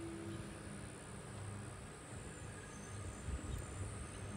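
Outdoor ambience: a steady, high insect chorus over a low rumble on the phone's microphone.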